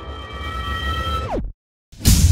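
Logo-intro sound effect: a held synthetic tone over a low rumble that swoops steeply down in pitch, like a power-down, and cuts off into a brief silence.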